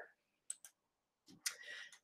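Faint computer mouse clicks: two quick clicks about half a second in, then another about a second and a half in, followed by a brief soft sound.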